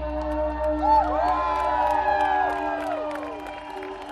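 A live rock band's last held notes ringing on steadily as a song ends. The crowd cheers and whoops over them for a couple of seconds, starting about a second in.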